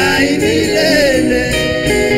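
Live gospel worship song: a worship team singing into microphones, with electronic keyboard accompaniment.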